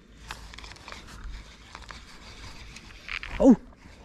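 Low, steady microphone rumble with a few faint clicks, then a man's short spoken "ja, nou" near the end, the loudest sound.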